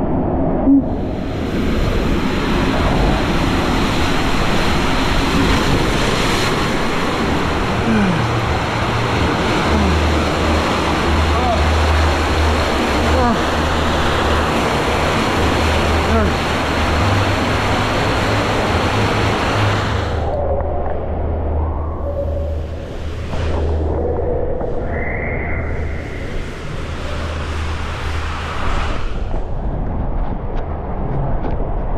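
Loud, steady rush of water and an inflatable ring tube sliding through an enclosed water-slide tube, with a deep rumble underneath. About 20 seconds in the rush drops away as the ride ends in the splash pool, leaving quieter water sounds.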